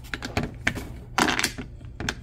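Hard translucent plastic sorting blocks clicking and clattering as a hand moves them in their tray: a run of quick, sharp clicks with a short scraping rasp a little past the middle.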